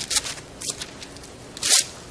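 Bible pages being turned by hand: several short papery rustles and flicks, the loudest about a second and a half in.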